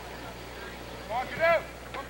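A loud, high-pitched shout from one person, rising and falling in pitch about a second in, over faint distant voices.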